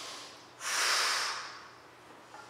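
A woman's single forceful breath out, a breathy hiss that starts about half a second in, lasts about a second and fades. It is an exertion breath while she holds an inverted forearm stand.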